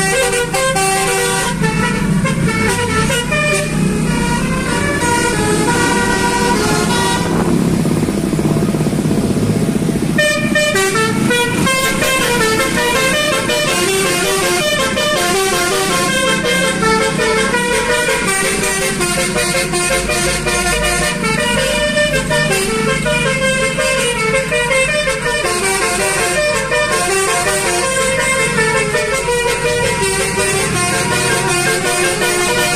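Multi-tone 'basuri' telolet air horn playing a melody note by note, with road and engine noise beneath. The tune breaks off for a couple of seconds about a third of the way in, then starts again.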